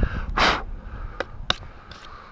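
A short, sharp breath out about half a second in, then two faint clicks, over a low rumble of wind on the microphone.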